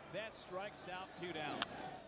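A single sharp crack of a baseball bat hitting a pitched ball, about one and a half seconds in, heard faintly in a TV broadcast under play-by-play commentary.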